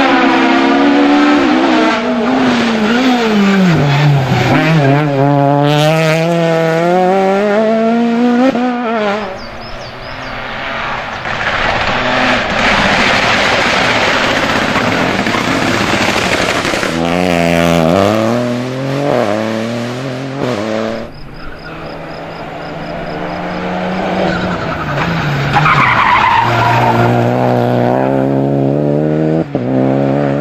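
Rally cars passing one after another on a tarmac special stage. Each engine is driven hard, its pitch rising and falling through gear changes, with stretches of tyre noise between the runs.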